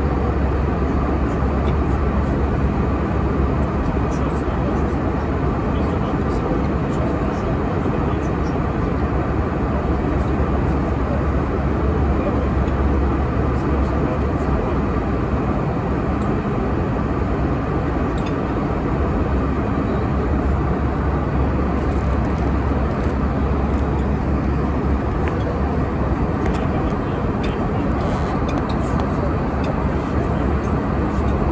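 Steady airliner cabin noise in flight: an even rush with a strong low rumble. Faint clinks of cutlery on a plate come through in the last several seconds.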